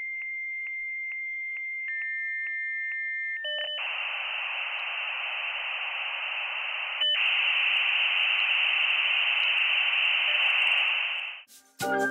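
Dial-up modem handshake sound effect. It opens with a steady high answer tone broken by regular clicks and steps down to a lower tone after about two seconds. From about three and a half seconds in comes a loud hiss of data noise, cut off briefly near seven seconds and ending just before the end.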